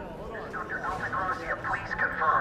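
A voice talking, thin and cut off above the middle range like speech over a radio or phone line: speech only.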